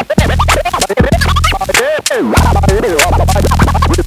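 DJ turntable scratching over an electronic hip-hop beat: a sample cut back and forth in quick rising and falling pitch sweeps, several a second, over a deep repeating bass note.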